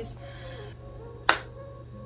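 A single sharp snap of the hands about a second and a quarter in, over low room noise.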